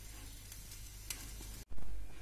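Thick tomato-based sauce simmering in a pan with monkfish pieces, a faint steady bubbling hiss. About 1.6 s in it cuts off abruptly, and a brief louder low-pitched noise follows.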